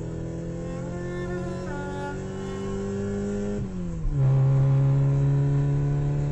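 BMW 440i's B58 turbocharged inline-six accelerating, its pitch climbing steadily, then dropping sharply with an upshift about four seconds in and holding steady after it.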